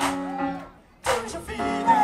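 A live funk band playing a held keyboard chord under long sliding vocal notes. The band cuts out almost to silence for a moment about three-quarters of a second in, then comes back in loud with a falling sung slide.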